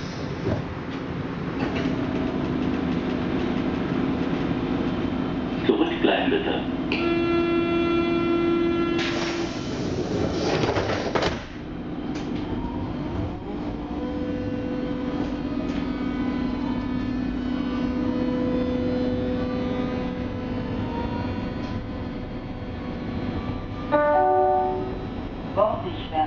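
Berlin U-Bahn F87 train running, heard from inside the car: a steady rumble and motor hum with whining tones that glide slowly in pitch. A single pitched tone is held for about two seconds around a third of the way in, and a short run of falling tones comes near the end.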